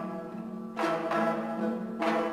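Instrumental passage of an Uzbek song between sung lines: string instruments playing sustained notes, with new notes struck a little under a second in.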